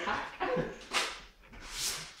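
Newspaper being torn and crumpled as wrapped items are pulled out and unwrapped, in two short rustling bursts, about a second in and near the end. A brief vocal cry comes just before them.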